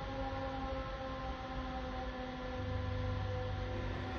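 A steady, even-pitched hum with several tones over a hiss, and a deeper hum joining about two and a half seconds in.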